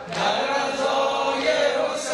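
Men chanting a Persian-language noha, a Shia mourning lament for Husayn, in long held melodic lines. The singing dips briefly at the very start, then carries on.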